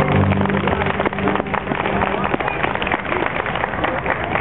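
Dance music ends on a held chord about half a second in, followed by a small audience clapping.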